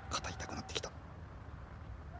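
A person whispering briefly in the first second, over a low steady hum.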